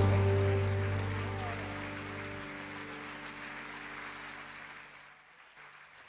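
The final chord of a small acoustic ensemble (piano, cello, double bass and plucked strings) held and dying away at the end of a song; the deep bass note stops about two and a half seconds in and the rest fades out almost to silence.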